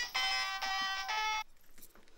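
Mobile phone ringing with a melodic ringtone, which cuts off suddenly about one and a half seconds in as the phone is picked up to answer the call.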